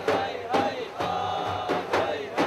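Daf frame drums beating while a crowd chants together in unison.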